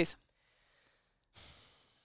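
A woman's short audible breath, a sigh-like rush of air about a second and a half in that fades over half a second, after a brief quiet pause that follows the last spoken word.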